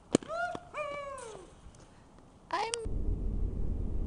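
A sharp knock, then a high call that rises and quickly falls in pitch, followed by a shorter one about two and a half seconds in. Near the end, steady low road rumble inside a moving car takes over.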